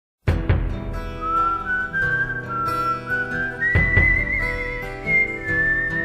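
Instrumental intro of a folk-pop ballad: strummed acoustic guitar chords with a high whistled melody over them, its long held notes wavering in pitch. The music starts about a quarter of a second in.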